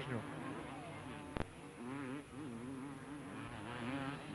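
Two-stroke 250 cc motocross bike engines buzzing, their pitch rising and falling as the throttle is worked. A single sharp click cuts in about a second and a half in.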